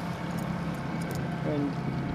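Boat's outboard motor running steadily, a low even hum under light wind and water noise, with a brief voice about one and a half seconds in.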